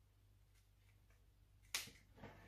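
Near silence, then near the end a single sharp snip of fabric scissors cutting a notch into the cloth.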